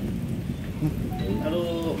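A low, steady rumbling noise, with a man's voice starting about a second in.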